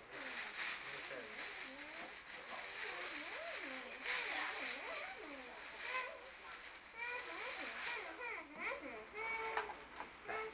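A child's voice vocalizing without clear words, its high pitch sliding widely up and down in a sing-song way.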